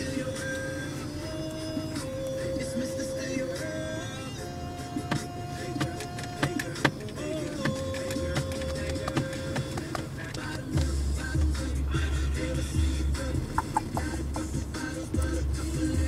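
Music playing over a car stereo: a held, stepping melody, joined by a heavy bass beat about eleven seconds in.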